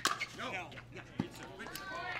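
Pickleball paddles hitting a hard plastic ball during a fast exchange at the net: a sharp pop right at the start and another a little over a second later.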